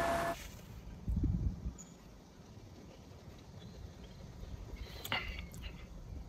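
Quiet outdoor background with a low rumble of wind on the microphone, which swells briefly about a second in. At the very start, the ring of a struck glass fades out.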